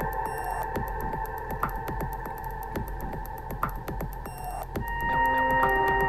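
Electronic music from an Aparillo software synthesizer sequenced in Drambo: held synth tones over a fast, even ticking pulse, with new lower notes coming in about five seconds in.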